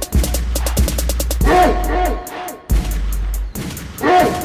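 Instrumental crunk rap beat with long, deep bass notes, fast rolls of hi-hat ticks and a short synth riff that repeats about every second and a half.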